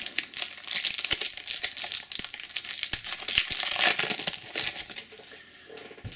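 Foil trading-card booster pack being opened by hand, the wrapper crinkling and crackling in a dense run that dies away about five seconds in.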